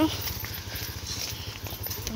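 Footsteps on a dirt path, a run of even, regular steps under a low rumble.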